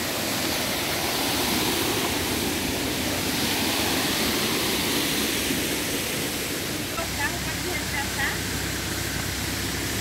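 Steady rushing of a waterfall, an even roar of falling water with no change in level.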